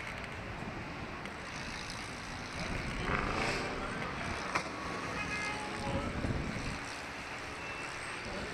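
Wind rushing over the microphone of a camera mounted on a Slingshot reverse-bungee ride as the capsule swings and spins through the air, with louder gusts about three seconds in and again around six seconds.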